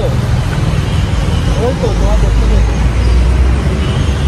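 Steady roar of busy road traffic close by, with a deeper rumble swelling through the middle as a heavy vehicle passes.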